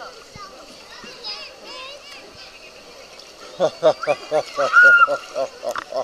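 Outdoor pool din of distant children's voices over lapping and splashing water. About three and a half seconds in, a child close to the microphone breaks in loudly with a quick run of short voice sounds and then a high squeal.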